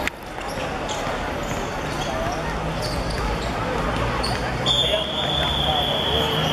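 Players' voices and the ball being kicked and bouncing on a hard court. Near the end a referee's whistle sounds one long steady blast, lasting about two seconds.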